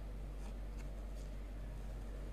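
Faint rubbing and scuffing of a thick cardboard board-book page being turned over, a few soft scrapes over a steady low hum.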